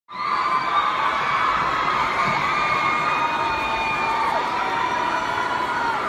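Arena concert crowd screaming and cheering steadily: a dense mass of overlapping, high-pitched, held screams.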